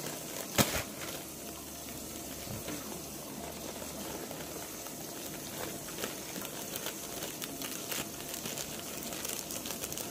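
Clear plastic pouch of brownie mix crinkling and crackling as it is handled and pulled open, with one sharp knock about half a second in.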